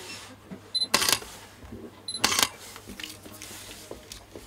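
Sony mirrorless camera firing its shutter twice, about a second and a half apart. Each release is a sharp double click, preceded a moment before by a short high electronic beep, the camera's focus-confirmation signal.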